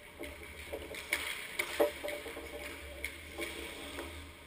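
Hockey sticks and pucks clacking on the ice, with sharp knocks every half second or so, the loudest a little under two seconds in, ringing in the echo of an indoor rink over a steady low hum.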